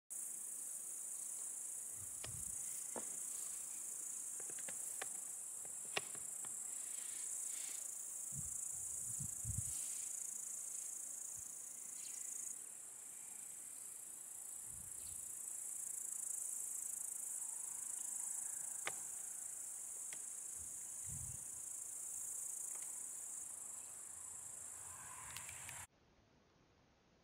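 Insects in meadow grass chirring in a steady, high-pitched drone, with a few faint clicks and low thumps scattered through it.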